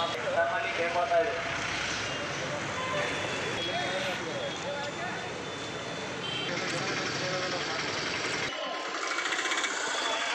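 Busy street traffic noise with people talking. The low rumble of traffic drops out about eight and a half seconds in.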